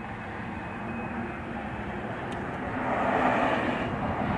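Rushing noise of a passing vehicle that grows gradually louder, loudest about three seconds in.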